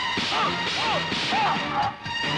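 Action-film fight soundtrack: a dramatic background score with stylised hit and crash sound effects laid over it. The sound dips briefly just before the end.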